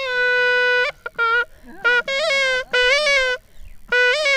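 Pepa, the Assamese Bihu hornpipe, being blown: a held note that stops just under a second in, then short phrases of bending, wavering notes with brief breaks between them.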